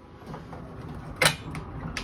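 Steel tool-cabinet drawers rolling on ball-bearing runners, with one sharp knock a little over a second in as a drawer shuts, and a lighter click near the end.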